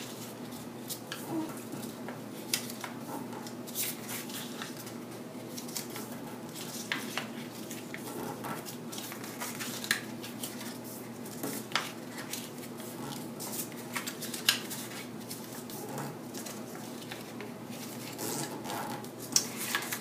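Cardstock being folded by hand along its score lines and pressed flat against a scoring board: irregular light crackles and taps of stiff paper.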